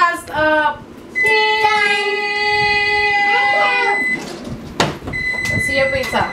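Electric oven's timer giving a long, steady high-pitched beep to signal that the cooking time is up. The beep starts about a second in, stops about four seconds in, and sounds again about a second later. Children hold a long sung note over the first beep.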